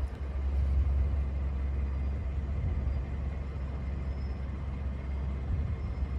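2007 Ford Edge's 3.5 L V6 idling, a steady low rumble.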